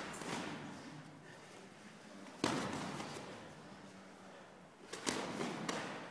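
Boxing gloves smacking as punches land in sparring: one hit at the start, another about two and a half seconds in, and several in quick succession near the end, each ringing briefly in the room.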